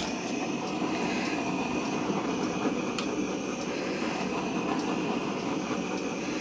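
Handheld butane torch burning with a steady hiss as it is played over wet acrylic pour paint to pop air bubbles and bring out the pearl white.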